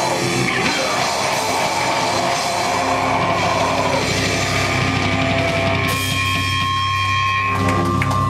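Live rock band with distorted guitar and drum kit playing the final bars of a song. About six seconds in the full playing stops, leaving held notes ringing out.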